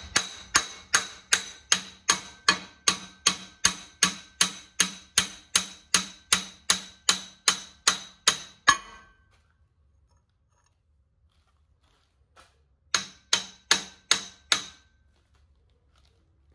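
Hammer blows on steel driving an excavator thumb's pivot pin back through its bore past a newly fitted shim, about two and a half blows a second, each one ringing. The steady blows stop about nine seconds in, and a quick run of five more comes near the end as the pin goes flush.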